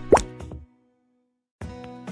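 A short pop sound effect sweeping quickly upward in pitch, the loudest thing here, over background music as a title card appears. Just over half a second in, everything cuts out to silence for about a second, then the music resumes.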